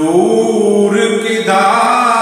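A man's voice chanting an Urdu naat in long, held notes that slide in pitch, a new, higher phrase beginning near the end.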